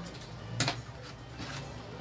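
Handling of fabric scissors on a cutting mat: one sharp click just over half a second in, then a lighter click around a second and a half.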